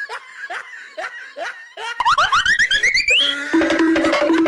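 A person laughing: a string of short falling 'ha' sounds, about three a second, then a quick run of rising, higher-pitched squeals in the second half.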